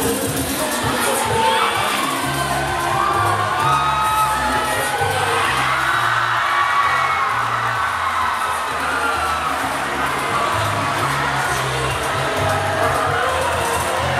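A crowd of high-school students cheering and shouting, many overlapping yells and whoops, over backing music with a steady bass beat.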